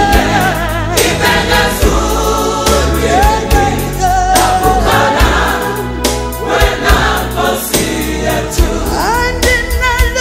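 South African gospel song with choir and lead singing over a steady beat and bass line. Several voices come in on held notes near the end.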